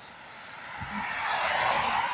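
Rushing noise of a passing vehicle, growing steadily louder over the two seconds.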